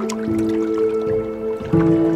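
Tense background music of long held notes. A new note enters just after the start, and a lower, louder chord comes in near the end.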